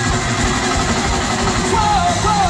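A punk rock band playing live at loud volume, with distorted electric guitars, bass and drums, as picked up by a small camera microphone in the audience. A voice starts singing near the end.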